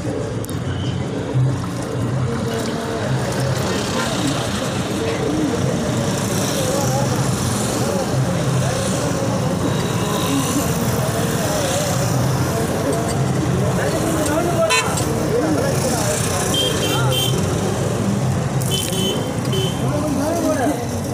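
Busy town roadside traffic: buses, a lorry, scooters and motorbikes passing with engines running, and people's voices around. Short, high horn beeps sound twice in the last few seconds.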